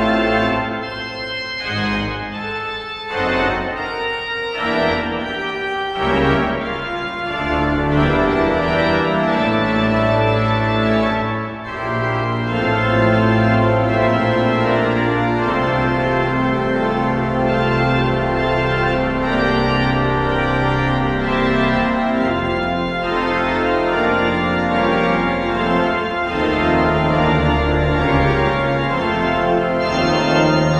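Church pipe organ, restored by Flentrop, playing slow sustained chords over deep held bass notes.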